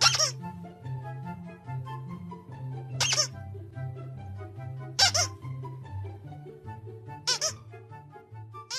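A squeaky plush toy squeezed four times, in short sharp squeaks about two seconds apart, over background music with a steady bass line.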